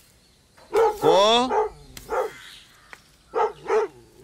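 A dog barking repeatedly in short, separate barks, with one longer, rising cry about a second in.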